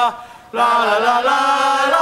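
Voices chanting a Thai cheer song on 'la' syllables. A held note breaks off at the start, and a new long note begins about half a second in.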